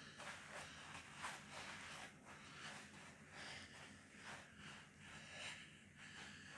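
Near silence, with faint soft scuffs, a few a second, from hands and feet on artificial turf during a bear crawl, and light breathing.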